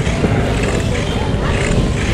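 Oxelo Carve 540 longboard's 78A urethane wheels rolling over rough, patched asphalt: a steady rolling noise mixed with wind on the microphone.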